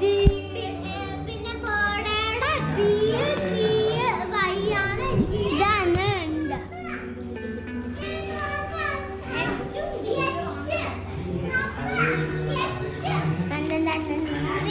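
Several children chattering and shouting excitedly as they play, over music in the background. A sharp knock sounds just after the start.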